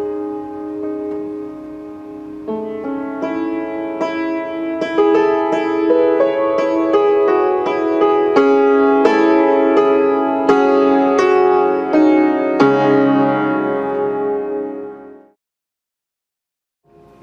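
Old, badly out-of-tune piano with a cracked soundboard, played slowly in an improvised, dark-sounding piece of sustained chords and single notes. It grows louder about five seconds in and cuts off suddenly near the end.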